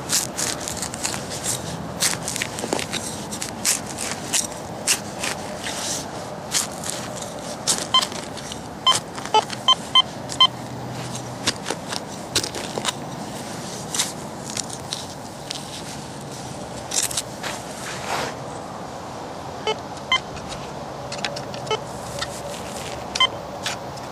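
Hand digger cutting and prying a plug of turf and soil, with many sharp crackling snaps as grass and roots tear. Short pitched metal-detector beeps come in a quick run of about six around eight to ten seconds in, and a few more near the end as the coil is passed over the lifted plug, all over a steady background noise.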